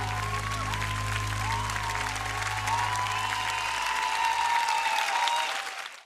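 Studio audience applauding over the last held notes of the music, the low notes dying away partway through and everything fading out at the end.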